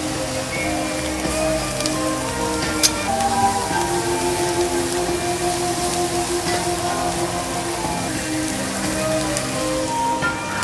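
Background music with long held notes over a steady sizzle of Taiwanese sausages and pork frying on a flat-top griddle, with a sharp click about three seconds in.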